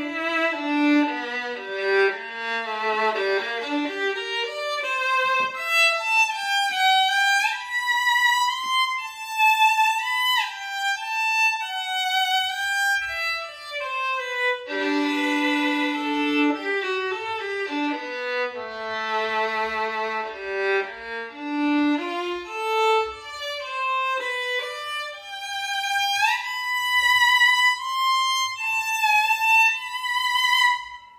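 A 3/4-size violin, said to be German-made, played solo with a very powerful, projecting tone. It plays a melodic phrase that opens on a held low note, starts over about halfway through, and ends on a held high note.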